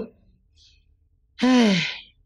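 A man sighing once in exasperation about a second and a half in, his voice falling in pitch through the breath.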